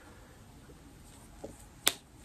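Small clicks from handling a pink plastic kitty-shaped hand-sanitizer holder on a keychain loop: a faint click about one and a half seconds in, then one sharp click just before the end.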